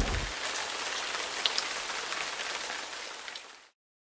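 Rain sound effect: a steady hiss of rain falling on a surface, with the low rumble of a thunderclap dying away in the first moment. The rain fades and stops about three and a half seconds in.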